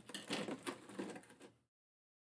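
Plastic lid of a seashell storage box being worked loose and lifted off, a run of plastic clicks and scrapes that stops abruptly about a second and a half in.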